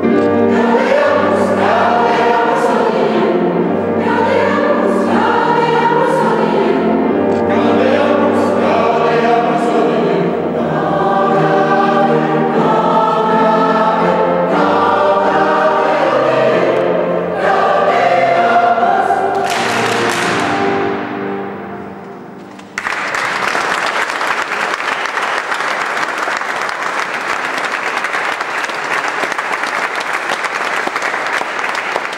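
Mixed choir singing in a reverberant stone church; the song ends and its last sound dies away a little past twenty seconds in. Then the audience suddenly breaks into applause.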